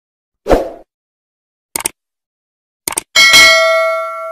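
Sound effects of a subscribe-button animation: a short pop, two quick double clicks like a mouse click, then a bright bell ding that rings on and fades out.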